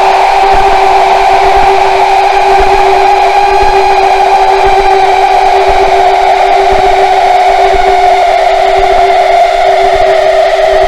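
Harsh noise from a no-input mixer's feedback loop, run through fuzz and reverb: a loud, steady drone with a held low tone and a higher band that slowly sinks in pitch, over a rough noisy hiss.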